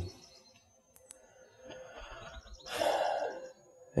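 A man breathing in, then letting out an audible sigh close to the earbud microphone. There is a faint click about a second in.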